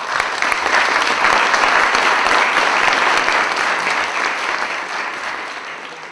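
Audience applauding, swelling quickly at the start and then slowly dying away.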